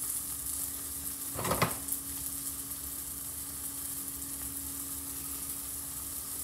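Beef burger patties frying in a nonstick pan: a steady sizzle, with one brief knock about a second and a half in and a steady low hum underneath.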